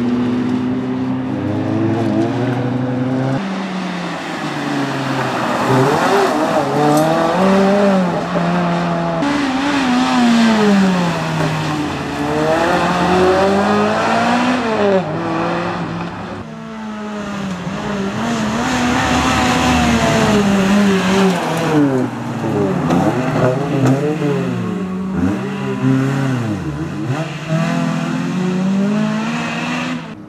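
Toyota Celica's four-cylinder engine driven hard round a course, its pitch climbing and falling again and again as the car accelerates, shifts and slows for corners.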